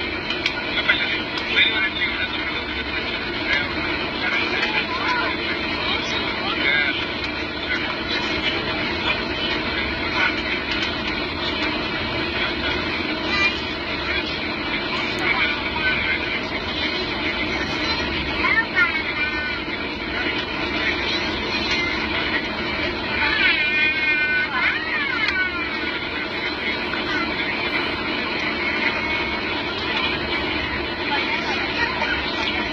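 Airliner cabin noise on the approach to landing: the steady drone of the jet engines and the airflow heard from a window seat, with voices in the cabin at times, clearest about two-thirds of the way in.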